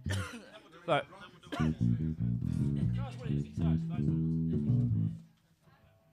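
Amplified electric bass guitar playing a short run of low sustained notes, noodling between songs, that stops abruptly about five seconds in.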